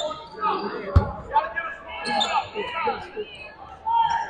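A basketball bouncing on a hardwood gym floor, with one loud thump about a second in.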